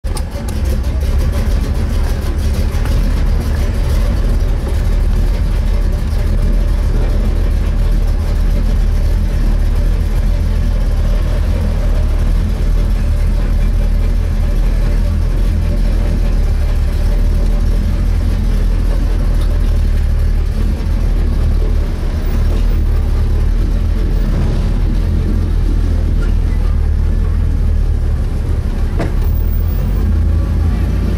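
Pro Street Chevrolet Nova's engine running at low speed as the car creeps along, a loud, steady low drone.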